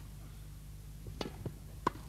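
Tennis ball being struck by rackets during a rally: a few sharp pocks, the loudest near the end, over a low steady hum.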